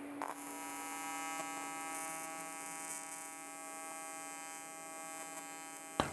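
AC TIG welding arc on aluminum from an Everlast Typhoon 230 set to a 161 Hz advanced square wave at about 171 amps. The arc catches right at the start and then buzzes steadily.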